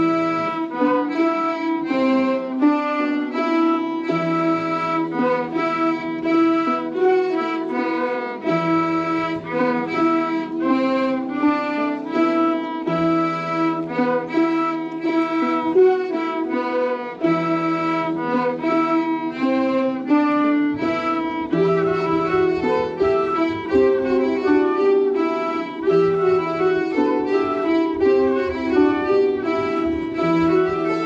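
Traditional Breton folk ensemble of lever harps, button accordion, two flutes and a fiddle playing an an dro dance tune from Haute-Bretagne, the flutes and fiddle carrying the melody over held low notes that change every few seconds.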